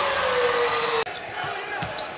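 Arena crowd noise with one long drawn-out shout over it, cut off abruptly about a second in. After that comes a quieter hall with a basketball bouncing on the hardwood court.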